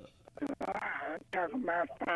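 Speech: a person talking in a narrow, thin voice, like talk over a phone line or radio.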